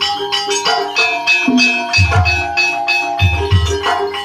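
Live Javanese gamelan playing for an ebeg (kuda kepang) dance: ringing metallophone notes and gongs in a steady rhythm, with deep kendang drum strokes that come in about halfway through.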